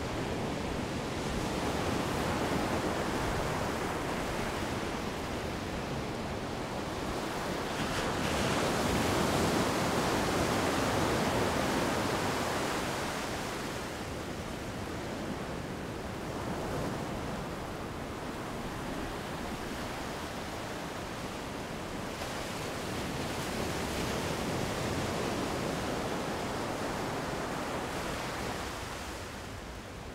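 Ocean surf: a steady rush of waves that slowly swells and eases, loudest about a third of the way through.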